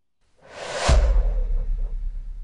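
Logo sting sound effect: a whoosh that swells for about half a second and ends in a deep boom, whose low rumble then fades away.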